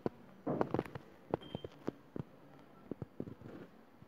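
A series of sharp taps from sprinkling ebru paint onto the marbling size: a quick flurry about half a second in, then single taps every half second or so.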